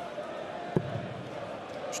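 A steel-tip dart striking the bristle dartboard once, a short sharp thud about three-quarters of a second in.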